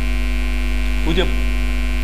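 Loud, steady electrical mains hum with a stack of steady overtones running under the recording. A man speaks a couple of words briefly about a second in.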